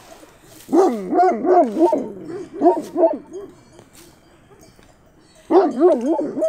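Sheepdog barking: a quick run of about five barks, then two more a moment later, then quieter until it starts again near the end.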